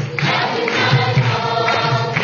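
A group of voices singing a devotional song to instrumental accompaniment, with a steady repeating pulse in the low notes.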